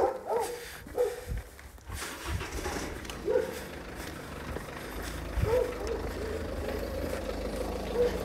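A few short, faint whimpers from a dog, and from about five seconds in the steady low hum of a vehicle engine running nearby.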